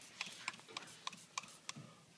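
Faint, irregular sharp clicks and taps, about three a second, from scrubbing a Ford C4 automatic transmission case with a brush and spray-bottle degreaser.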